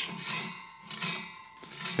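Cylinder-mower reel turned by hand, its blades brushing the bedknife under light finger pressure: a faint metallic scraping with a thin ringing that fades away. The contact shows how little pressure it takes to flex the bedknife bar and close the cutting gap.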